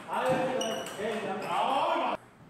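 A man's voice letting out a drawn-out exclamation in two long stretches, cutting off suddenly at the end.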